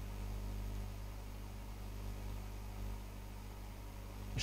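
Steady low electrical hum with a faint even hiss: the background noise of the recording.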